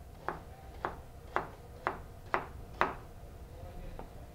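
Chef's knife chopping through raw potato and striking a white plastic cutting board: six even chops, about two a second, stopping near the three-second mark.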